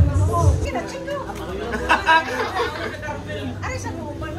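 Several people chattering, no words clear, over background music with a beat that stops well under a second in.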